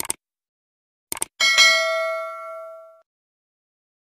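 Subscribe-button sound effects: short clicks at the start and again about a second in, then a bright bell ding that rings out and fades over about a second and a half.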